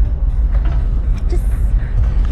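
Steady low rumble of wind and handling noise on a handheld camera's microphone as a person squeezes between metal dock railings, with a brief scraping rustle about a second and a half in.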